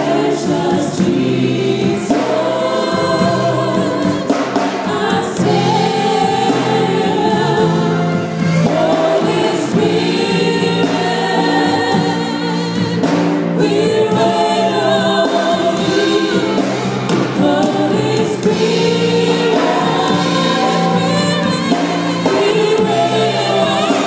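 Live gospel music: a female lead singer with a backing choir, accompanied by a band with keyboard and electric guitar, playing steadily throughout.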